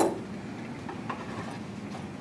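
A small hinged gift box clicks open, then faint taps and rustles as fingers handle the box and the nail clippers inside it.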